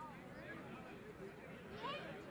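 Quiet outdoor ambience with faint distant voices, short and wavering, and no loud event.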